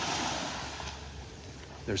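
Small waves lapping at the shoreline: a soft wash of surf that swells at the start and fades away. A man's voice starts again at the very end.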